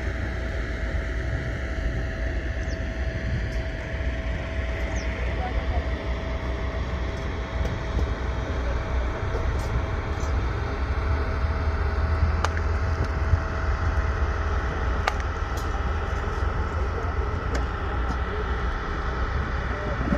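Tractor engine running steadily: a continuous low rumble with a faint steady tone above it and a few sharp clicks.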